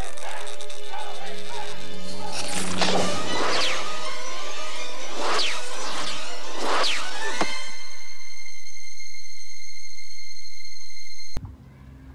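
Film soundtrack: music with a quick series of falling whooshes as a thrown baseball flies, then a held chord. About eleven seconds in it cuts off suddenly to a quieter low rumble of wind on the microphone.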